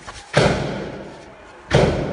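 Police gunfire: two shots about a second and a half apart, each echoing and dying away slowly.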